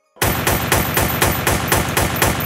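Rapid automatic-gunfire sound effect in the soundtrack, about seven sharp shots a second, starting abruptly just after a moment of silence.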